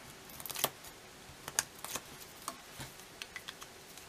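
Backing strip being peeled off double-sided adhesive tape on the back of a small paper label, with faint scattered crackles and ticks of fingers handling the paper.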